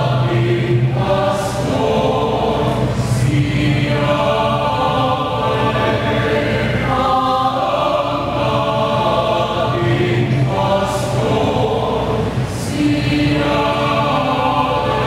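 Mixed choir of women's and men's voices singing a sacred song in held chords. The chords change every second or two, with a few brief hissed consonants.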